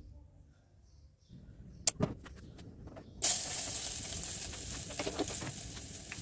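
A few sharp clicks, then about three seconds in a loud steady hiss starts suddenly from the gas stove and carries on.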